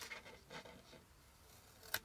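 Small scissors cutting a notch into coated cardstock: faint snips and paper rustle, a few in the first half-second and another just before the end.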